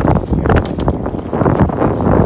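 Wind buffeting the microphone on an open boat over choppy water, a loud rough rumble broken by irregular short knocks and rustles.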